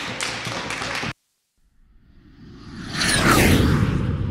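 Room noise cuts off suddenly about a second in; after a moment of silence an edited whoosh sound effect swells up, with a falling swish near the end over a low rumble.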